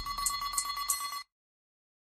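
An edited transition sound effect: a high, trilling ring that stops suddenly just over a second in, followed by dead silence.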